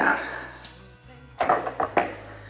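Handling noise of a handheld video camera being set down on a surface: a quiet stretch, then a quick cluster of knocks and clatter near the end.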